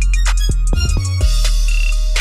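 Trap hip-hop instrumental beat: a deep, sustained 808 bass under drum-machine hits and a high melody.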